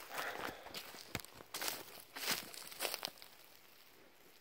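Footsteps crunching through leaf litter and undergrowth on a forest floor at an uneven walking pace, with a sharp click about a second in.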